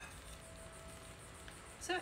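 Quiet room tone with a faint steady hum. A woman starts speaking near the end.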